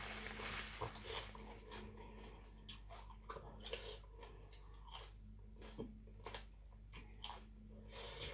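Close-up chewing and wet mouth clicks and smacks of someone eating spicy papaya salad with soft rice noodles, in many short scattered sounds. A low steady hum runs underneath.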